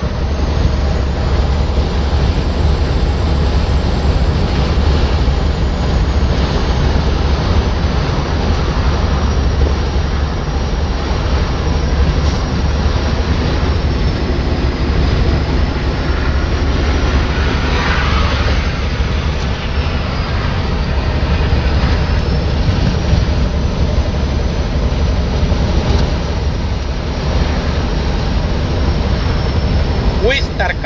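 Steady road and engine noise inside a car's cabin cruising at highway speed: a loud, constant low rumble.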